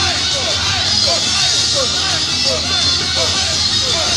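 A J-pop idol song played loud over an outdoor stage PA, with young women's voices singing in short, bouncing phrases over a constant hiss.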